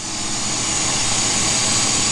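Lampworking bench torch flame hissing steadily, growing slightly louder, as borosilicate glass is heated in it.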